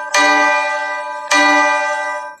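Instrumental passage of a song's backing track: two bell-like chords struck about a second apart, each ringing on and fading.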